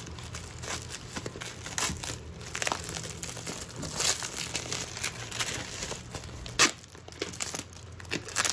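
Clear plastic bag of whole coffee beans crinkling and crackling as it is cut with scissors and handled, in irregular crackles, with one louder crackle late on.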